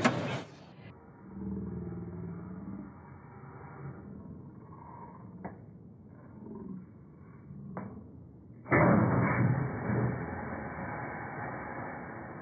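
Edlund electric can crusher squashing a large food-service can: low mechanical running with the creak of buckling tin, then a much louder rough crushing noise about three-quarters through that slowly dies down.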